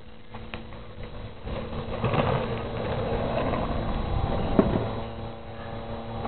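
Urethane skateboard wheels rolling on asphalt under a seated rider, a rumble that builds from about a second and a half in as the board picks up speed, with one sharp knock near the end of the run.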